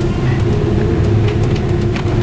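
Mechanical-room machinery running with a steady low rumble and a constant hum, with a plastic bag rustling and a few light clicks over it.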